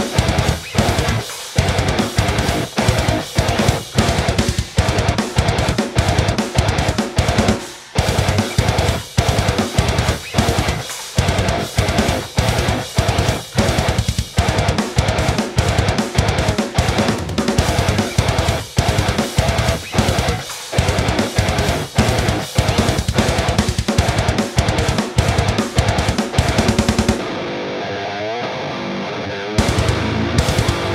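Heavy metal song: a seven-string electric guitar with lower-output passive pickups plays fast, tight chugging riffs over a drum kit with bass drum and cymbals. About three seconds before the end the drums and chugs stop, leaving a held guitar sound that slides and wavers in pitch, and then the full riff comes back.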